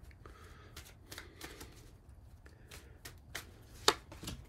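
Tarot cards being handled and shuffled: a scatter of light card clicks and flicks, with one sharper snap near the end.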